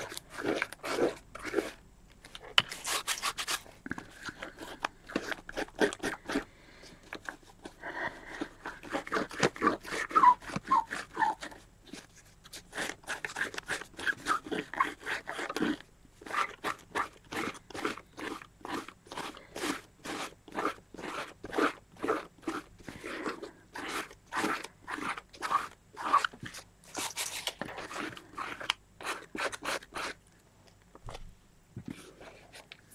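Fingertips rubbing dried masking fluid off a black acrylic-painted paper page: a run of short, dry scrubbing strokes, several a second, pausing now and then.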